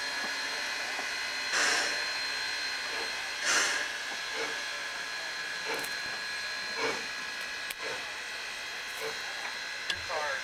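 Steam locomotive starting away slowly, its exhaust chuffing in widely spaced beats over a steady hiss of steam. The first two beats are the strongest; after that the beats come weaker and a little quicker, about one a second.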